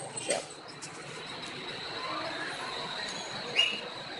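Steady background noise of cars queued at a toll booth, with a faint high whine throughout and one short, sharp rising chirp about three and a half seconds in.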